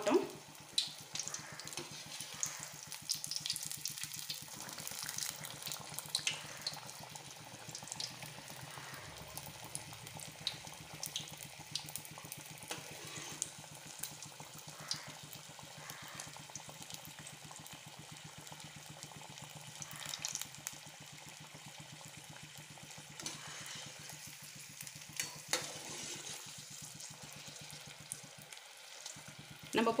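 Batter-coated stuffed green chilli (chilli bajji) deep-frying in hot oil: a steady, quiet sizzling with many small crackles from the bubbling oil.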